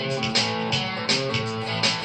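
Electric guitar strummed in a steady rockabilly rhythm, about three strokes a second.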